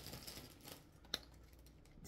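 Faint handling noise as a bunch of artificial sunflower and berry picks is picked up: light rustling and small clicks, with one sharper click just past a second in.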